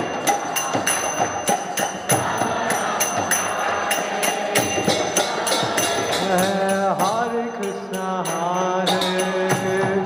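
Devotional kirtan music: small hand cymbals struck in a steady rhythm with drums and group chanting. From about six seconds in a lead voice sings bending melodic lines over a held low note.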